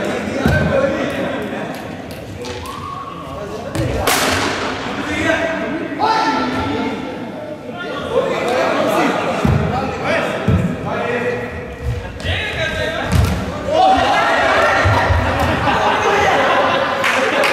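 Players' voices calling and talking in an echoing sports hall, with scattered low thuds and one sharp crack about four seconds in.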